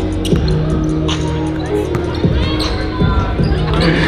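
A basketball bouncing a few times on a hardwood gym floor as it is dribbled, under a background music track with held low notes.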